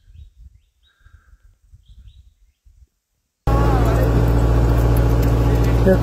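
Faint low rumble with a couple of faint chirps. Then, after a moment of silence about three seconds in, a boat's engine runs loudly and steadily as a deep, even hum.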